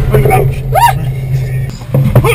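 A startled woman's short, high-pitched cry that rises and falls in pitch, with a few brief vocal sounds before it, over a steady low drone of scary background music.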